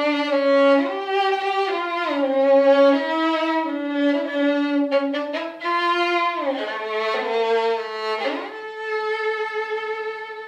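Solo violin playing a slow melody in its low register on a silver-wound Pirastro Evah Pirazzi Gold G string: sustained notes linked by sliding shifts of pitch, with clear slides near the middle and about two-thirds through.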